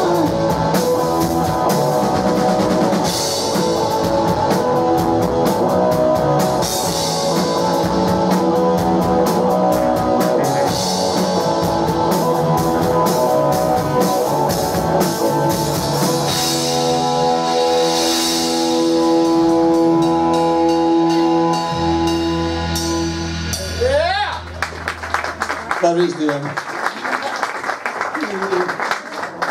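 Live rock band playing: a woman singing lead with electric guitar, bass guitar and a drum kit with cymbals. About two thirds of the way in the band holds a long final chord. It breaks off with a rising sliding note, followed by clapping.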